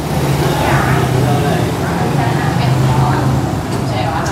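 A steady low mechanical hum with indistinct voices in the background.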